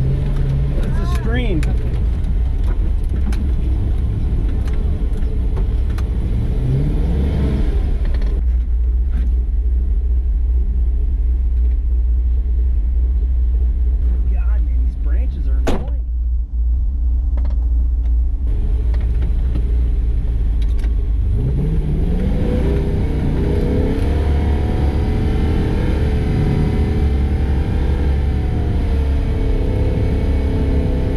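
A Chevy truck's 6.0 LS V8 pulling through snow, with a steady low rumble. The revs rise twice, about a quarter of the way in and again about two-thirds of the way through. There is a short sharp click near the middle.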